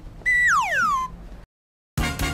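A whistle sound effect: a high tone held for a moment, then gliding steeply downward for about half a second.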